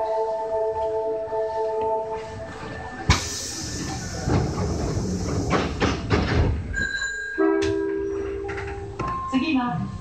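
Osaka Metro 5300 series subway train running through a tunnel, heard from inside the front car: rumbling wheel-and-rail noise with steady whining tones early on and again near the end, and a sharp clack about three seconds in.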